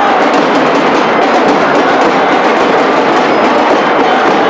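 Large hand drums beaten in a fast, unbroken rhythm, mixed with the loud noise of a dense crowd.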